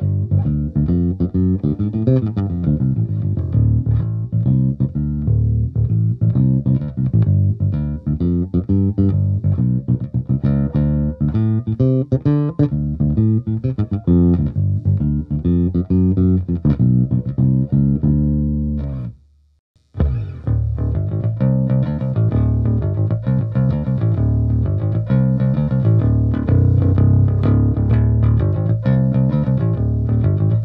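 MTD CRB five-string P-style bass with a split-coil pickup, played through a Genz-Benz bass amp: a continuous bass line of plucked notes, first played fingerstyle, then, after a brief break about two-thirds of the way through, played with a pick.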